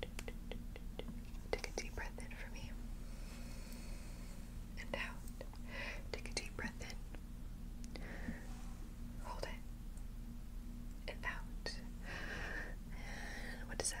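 Close-miked soft whispering in short breathy phrases, with many short sharp clicks between them, over a steady low hum.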